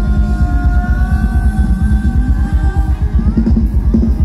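Live band playing loud Thai ramwong dance music: a fast, steady drum beat under long held melody notes.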